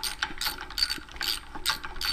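Rapid, even metallic clicking, about five clicks a second, as bolts and washers are trial-fitted by hand into a VW Type 1 cam gear.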